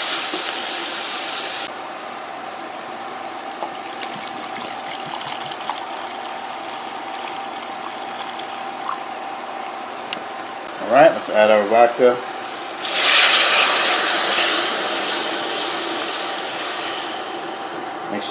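Onion and garlic sizzling in a pot as they are stirred, falling quieter after about two seconds. About thirteen seconds in, a cup of vodka is poured into the hot pot, setting off a loud sizzle that slowly dies down over the next few seconds.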